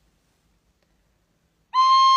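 Near silence, then near the end a plastic recorder starts a single steady note.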